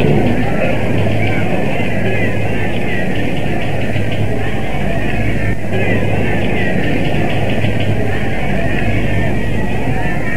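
Steady crowd noise from an old radio broadcast recording of a cricket Test, a dense hubbub of spectators heard thin and muffled through the narrow broadcast sound, with a low mains hum underneath.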